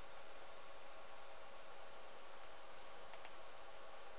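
Faint computer mouse clicks, a couple of them about three seconds in, over a steady low hiss and hum of the recording.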